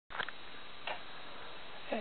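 Steady background hiss of a low-quality recording, with a short click just after the start and another near one second in.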